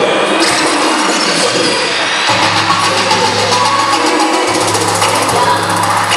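Loud hip hop dance music playing for a stage routine, with a deep sustained bass note that comes in about two seconds in and breaks off briefly near the fifth second.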